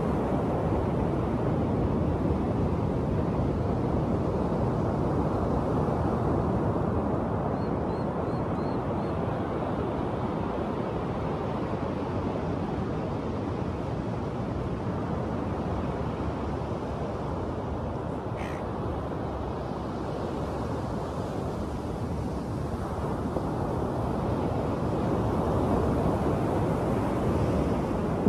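Ocean surf washing steadily on the beach, with a few faint bird calls over it: a quick run of four short chirps about a third of the way in and one brief call about two-thirds of the way in.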